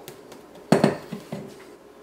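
A stainless-steel mixer bowl set down on a countertop: a short clatter of knocks just under a second in, followed by a couple of lighter taps.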